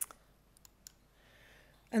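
A single sharp click as the presentation slide is advanced, then two faint ticks over quiet room tone.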